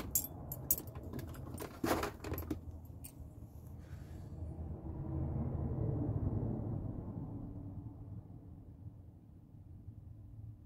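Small metal pieces jingling and clicking in a quick cluster over the first couple of seconds as he moves, then a low steady rumble that swells and fades.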